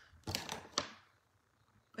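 A quick cluster of short clicks and knocks, lasting about half a second, with the sharpest click at its end.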